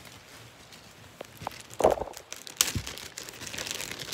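Plastic zip-top bag crinkling as it is handled, with a few sharp crackles from about halfway through.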